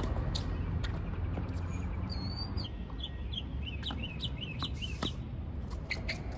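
A tennis ball struck sharply by a racket at the very start, followed by a few fainter knocks. From about two seconds in, a bird sings a quick run of about ten short, high chirping notes lasting about three seconds, over steady low background noise.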